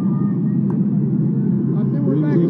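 Indistinct voices, several people talking at once, heard as a continuous murmur without clear words.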